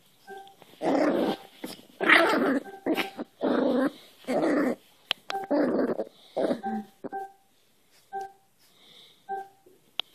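Cairn terrier puppy play-growling in a run of short, loud, rough bursts while wrestling with a person's hand, fading after about seven seconds to a few short, faint whimpering notes.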